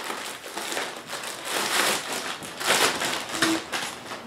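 Clear plastic bag crinkling and rustling as it is handled, in uneven surges.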